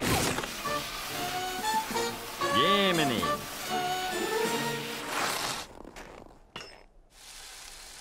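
Cartoon music score with sound effects: a sudden swoosh at the start and a sliding, arching cry about two and a half seconds in. It drops to a faint steady hiss near the end as the overheated wooden skis give off smoke.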